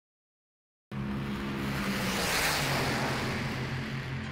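A car passing by, starting suddenly about a second in: tyre and engine noise swells to a peak about halfway through and then fades, over a steady low engine hum.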